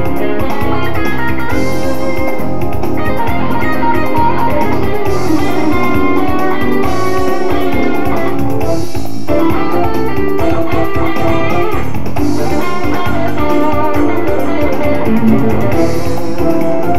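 Electric guitar playing improvised lead lines over a smooth-jazz band recording with bass and drums, at a steady loud level.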